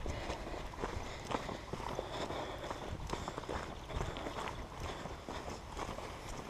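Irregular light crunching and clicking of movement over gravelly earth and cracked concrete, with wind rumbling on the microphone.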